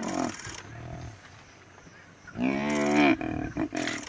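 Animal cries from a male lion's attack on a hippo calf, the calf bellowing in distress as it is bitten. There is a short cry at the start, then one long, loud cry that rises and falls in pitch about two and a half seconds in, and another short cry near the end.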